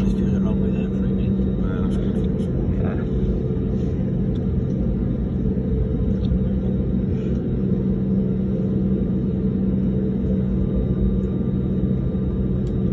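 Airliner engines and cabin noise heard from inside the passenger cabin while taxiing onto the runway: a steady low drone with a constant hum, the engines not yet spooled up for take-off.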